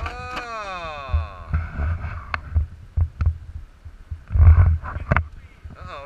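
Radio-controlled scale rock crawler knocking and thumping against granite as it tumbles, a series of sharp hard-plastic knocks with low thumps, the heaviest about four and a half seconds in. A falling-pitched whine runs through the first second and a half.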